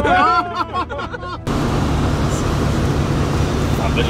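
Steady road and engine noise inside a van's cabin at highway speed, a low hum under an even tyre-and-wind hiss, starting abruptly about a second and a half in after a man's voice.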